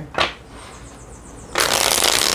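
A deck of tarot cards being riffle-shuffled on a table. A brief tap comes at the start, then, about one and a half seconds in, a loud rapid flutter of cards interleaving.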